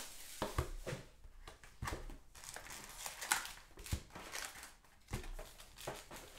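Handling sounds of a cardboard hobby box being opened and its foil card packs pulled out: light crinkling of the wrappers and several soft knocks as box and packs touch the table.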